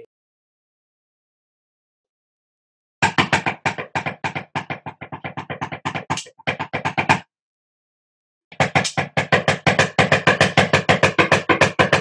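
Two fast drum rolls in a roll-and-stop exercise, each cut off abruptly on the stop. The first starts about three seconds in and lasts about four seconds. The second starts after a short silence and is still going at the end. Heard over a video call, with dead silence between the rolls.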